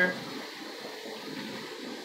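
Faint rustling and handling noise of jacket fabric being moved against the phone's microphone, steady and without distinct knocks.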